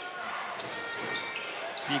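A basketball dribbled on a hardwood court, a few bounces, over the steady noise of an arena crowd.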